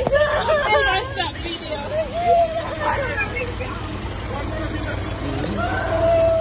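Voices of several people talking and calling over one another, no words clear, over a steady low background rumble.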